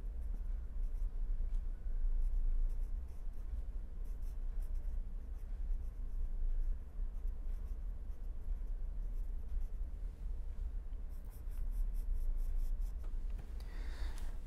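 Pen tip scratching on paper while a word is handwritten, in short irregular strokes, with a quicker run of strokes near the end as the heading is underlined with a wavy line. A steady low hum runs underneath.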